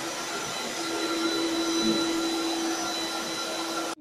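An electric pet-grooming blower runs steadily, blowing air through its hose nozzle over a husky's coat with a hiss and a motor whine, then is switched off abruptly at the very end.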